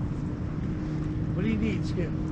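Steady low hum of the boat's idling outboard motor, with wind noise on the microphone. A voice speaks briefly about one and a half seconds in.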